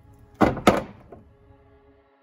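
Two sharp knocks about a quarter of a second apart, from stock LS fuel injectors being handled and knocked against a hard surface on the workbench.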